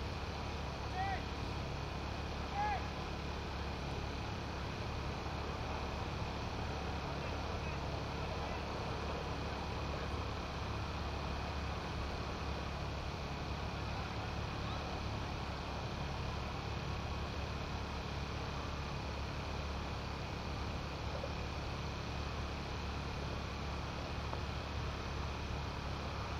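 Steady background noise of an open ground: a constant low hum under a faint hiss. Two short arched calls come about one and three seconds in.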